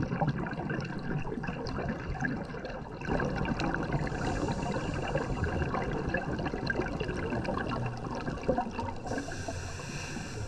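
Underwater sea ambience picked up by a diving camera: a steady, noisy rush of water with fine crackling, a little louder after about three seconds.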